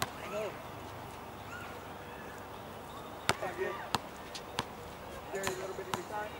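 A basketball bouncing on a hard outdoor court: a handful of sharp single bounces, three of them about two-thirds of a second apart in the second half, with faint voices in the background.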